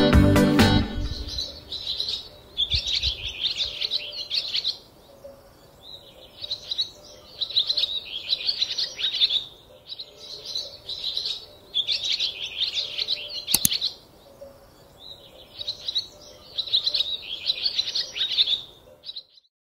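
A songbird singing in repeated chirping phrases of a second or two each, with short pauses between them. Background music fades out in the first second, and a single sharp click comes about three-quarters of the way through.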